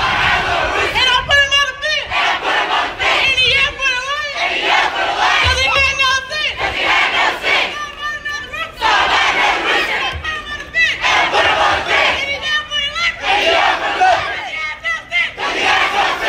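A group of cheerleaders shouting a cheer in unison, in short phrases repeated about every two seconds with brief gaps between them, and a few low thumps.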